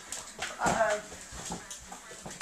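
A toddler vocalising: short pitched babbling sounds, the loudest a little over half a second in.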